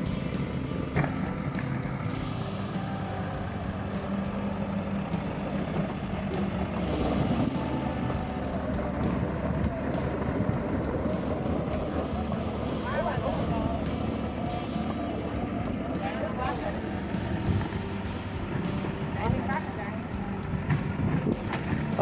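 Excavator diesel engine running steadily at a constant pitch, with a few brief voices over it.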